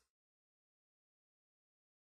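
Complete silence: the audio track is muted or gated, with no sound at all.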